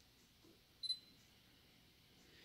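Sony A7R III autofocus-confirmation beep: one short, high beep as the camera locks focus, otherwise near silence.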